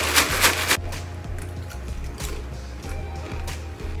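A foil Doritos chip bag with crushed dry instant ramen and tortilla chips inside shaken hard, the bag crinkling and the contents rattling; the shaking stops about a second in. Quiet background music runs underneath.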